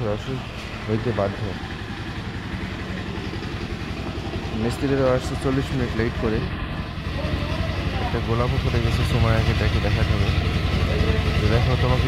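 A small engine running steadily with a low, pulsing drone, growing louder in the second half, with people talking over it.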